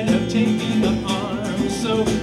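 Small live folk band playing: strummed acoustic guitar, electric bass and a djembe hand drum, with singing.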